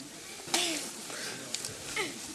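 Yellow plastic shovel digging into a heap of loose, dry soil: one scrape about half a second in.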